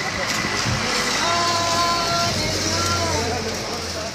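A vehicle horn sounding a steady two-note honk of about a second, then a shorter second honk, over a low running engine and street noise with voices.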